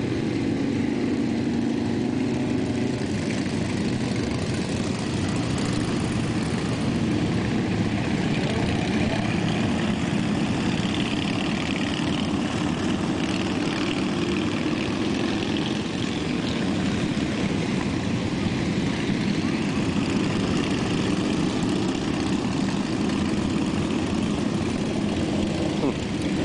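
Motorcycle engines running steadily in a continuous loud drone, with no breaks or clear pass-bys.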